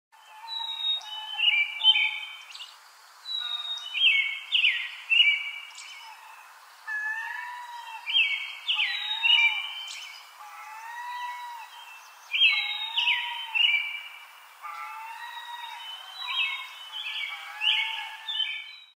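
Several birds singing, with short whistled phrases repeated and overlapping throughout. A lower, rising-and-falling call recurs every couple of seconds beneath them.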